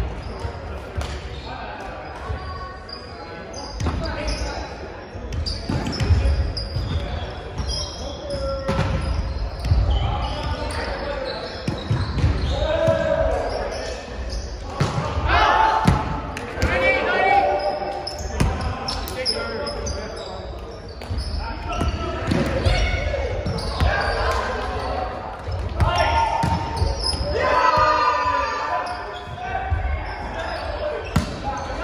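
Indoor volleyball play in a gymnasium: repeated ball strikes and bounces on the hardwood court, short high squeaks of sneakers, and players shouting and calling out, all echoing in the large hall.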